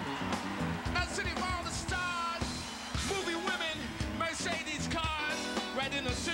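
Live funk band playing, with a steady drum beat, electric guitar and keyboards, and a lead singer singing into a handheld microphone.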